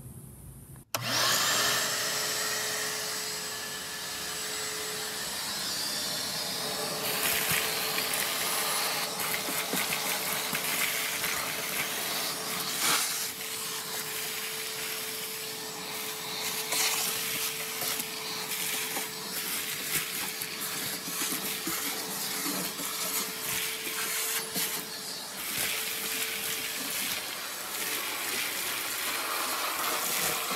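Shop vacuum switching on about a second in, spinning up to a steady hum with a rushing hiss. Its hose is sucking loose rust flakes, broken glass and dirt off a rusted car floor pan, and many small clicks come from debris rattling up the hose.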